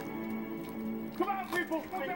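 Film soundtrack playing from a television: sustained background music, with voices coming in about a second in.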